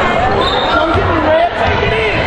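Basketball being dribbled on a hardwood gym floor, bouncing several times, with spectators' voices echoing in the gym.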